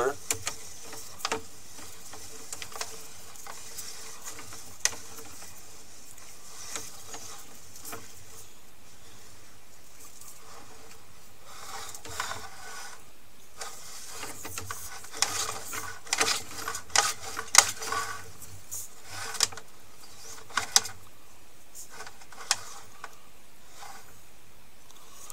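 Push cable of a sewer inspection camera being fed into a four-inch sewer line and worked back and forth, making irregular clicks and rattles. The clatter is busiest in the second half, as the camera runs into a soft blockage, over a faint steady hum.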